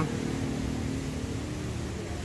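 Steady low mechanical hum and rumble with a faint drone, at an even level throughout.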